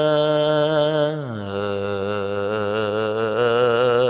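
A man's solo melodic religious chanting into a microphone, in the drawn-out style of Quran recitation. A long held note with a wavering vibrato drops to a lower pitch about a second in and is held there.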